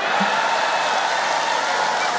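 Large indoor audience applauding and cheering, a dense, steady wash of clapping with voices calling out in it, swelling in just before and holding at full strength.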